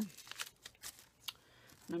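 Small plastic bags of beads being handled on a tabletop: a few light, separate clicks and crinkles.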